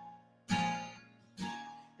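Acoustic guitar strumming two chords about a second apart, each left to ring and fade.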